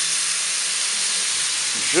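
Pork chops sizzling steadily on a hot plancha griddle as marinade is poured onto them and hisses into steam on the hot metal.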